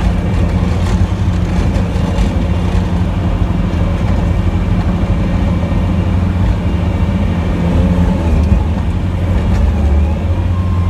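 Plow truck's engine running steadily under load as it pushes snow with its front-mounted plow, heard from inside the cab. The engine note rises briefly about eight seconds in.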